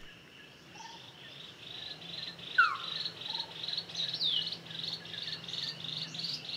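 Tropical forest ambience: an insect chorus pulses steadily at a high pitch, about three pulses a second. A bird gives short falling whistles, one about two and a half seconds in and a higher one past the four-second mark.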